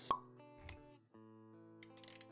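Intro sound effects over background music: a sharp pop at the start, a softer low thud just over half a second later, then held music notes.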